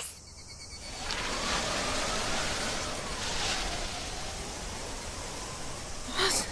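Ambient sound effect for an awkward silence: a steady high hiss that swells in about a second in and holds, with a faint whistling tone gliding slowly up and then down beneath it.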